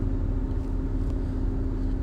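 Steady low rumble with a faint steady hum, a constant background noise with nothing starting or stopping.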